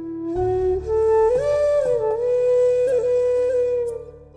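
Flute playing a sustained, gliding melodic phrase in Raag Bhoopali, its pitch sliding up about a second in and back down a second later, over a steady low drone.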